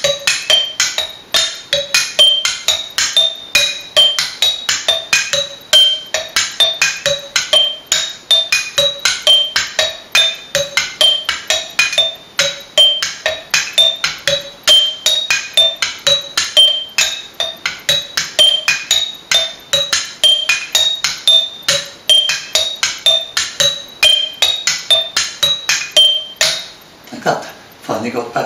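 Glass jam jars standing on bubble wrap struck with two sticks, playing a 5:4 polyrhythm. The left hand cycles four jars over five beats and the right hand three jars over four beats, giving a rapid, even run of short clinking pitched strikes that stops near the end.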